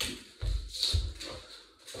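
Footsteps in socks on a hard floor: two dull thuds about half a second apart as a person moves quickly about the room.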